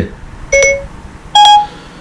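iPhone Siri chimes: two short electronic beeps about a second apart, the second higher in pitch, as Siri takes in the spoken question before answering.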